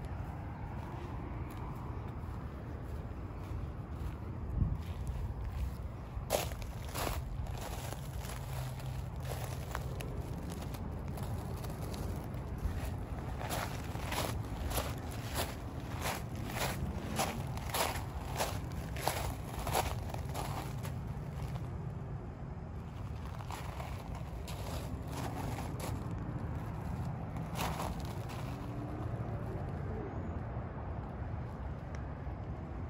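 Footsteps walking on a stone path, a series of short sharp steps at about two a second through the middle and a few more near the end, over a steady low outdoor rumble.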